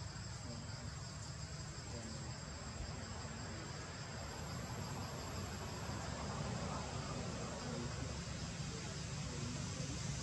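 Insects droning steadily in the trees: a continuous high-pitched trill that holds one pitch throughout, over a low, steady rumble.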